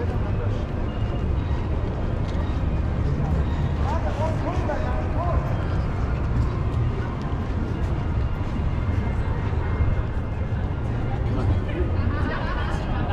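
Busy city street ambience: a steady low rumble of traffic, with snatches of passers-by talking, clearest about four seconds in.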